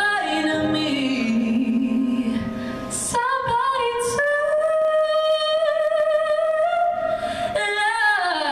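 A woman singing a slow song with long held notes that slide between pitches, accompanied on keyboard. Near the end one note is held steady for about three seconds.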